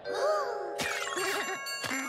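Cartoon sound effects: a short swooping tone over a held chord, then a sharp hit just under a second in, followed by bright, bell-like ringing dings.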